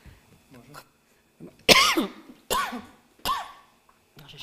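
A person coughing three times, a little under a second apart, the first cough the loudest, each trailing off lower in pitch.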